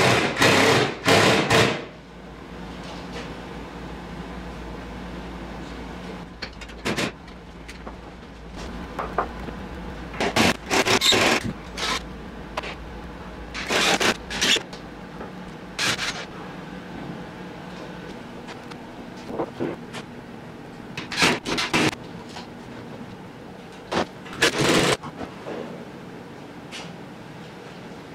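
Intermittent knocks, clunks and scrapes of wooden drum shells and hardware being handled and hung on a workshop wall, over a low steady hum that fades out about two-thirds of the way through.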